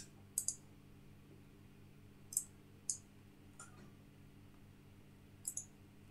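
A handful of faint, sharp clicks from a computer mouse, spread unevenly over several seconds, as slide text is selected and deselected in PowerPoint.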